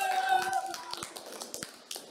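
A child's high voice calls out briefly, then a few people clap their hands in scattered, uneven claps.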